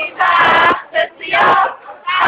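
A crowd of voices singing together in unison, in three loud phrases with short breaks between them.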